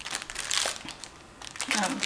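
Plastic packaging crinkling as a packet of resealable plastic bags is handled, a burst of rustling over about the first second that then dies down.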